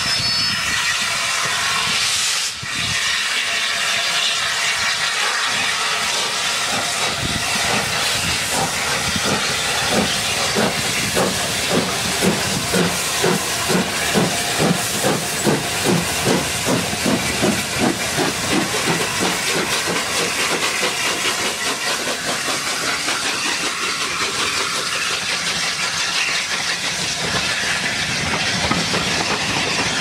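LNER A1 Pacific No. 60163 Tornado, a three-cylinder steam locomotive, passing close by with a steady hiss of steam escaping at its cylinders. Its exhaust beats build to a rhythmic chuffing of about two a second in the middle, then give way to the rolling noise of the coaches running past.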